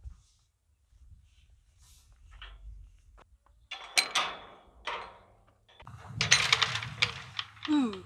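Galvanised steel field gate swung shut, its spring-loaded bolt latch clanking sharply into the steel keeper on the oak gate post about four seconds in, with a second metallic clack a second later. A longer, louder clatter of metal follows near the end.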